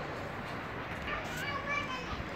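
Children's high voices chattering about a second in, over steady outdoor background noise.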